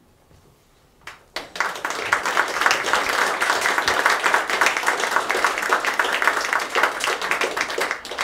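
Audience applauding. Dense clapping starts about a second in and keeps up steadily.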